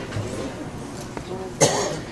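A single loud cough about one and a half seconds in, over a low murmur of voices.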